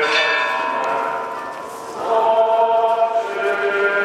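Many voices singing a slow funeral hymn in long held notes, moving to a new note about two seconds in.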